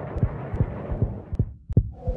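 Trailer sound design: a run of low, heartbeat-like bass thuds, several a second, over a rumble that fades out near the end.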